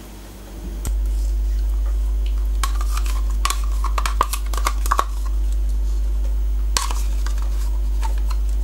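A metal spoon scraping plain yogurt out of a plastic pot and clinking against the pot and a stainless steel mixing bowl, in a cluster of short clicks and scrapes in the middle and once more near the end. A steady low hum runs underneath.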